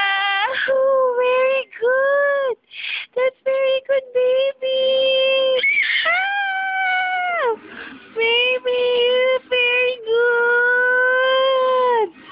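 A high voice singing a slow melody in long held notes, with short breaks and pitch steps between them.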